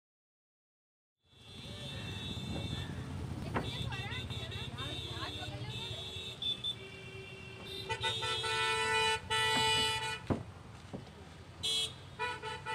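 Busy roadside traffic with vehicle horns honking again and again. The horns come in short and long blasts, the longest and loudest in the second half. It starts after about a second of silence.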